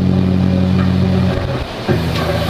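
Guitar's closing low chord held and ringing, dying away about a second and a half in.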